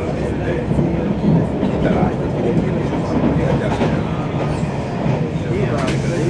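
Steady rumble of a moving train heard from inside the carriage, the wheels running over the rails with some clickety-clack.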